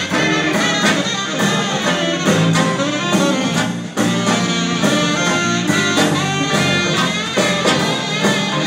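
Live jazz band playing, with saxophones, trumpets and a trombone over a drum kit, guitar and keyboard. The sound briefly dips about four seconds in.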